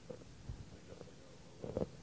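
A faint, muffled voice from the audience of a lecture hall, heard only as a few short fragments over quiet room tone.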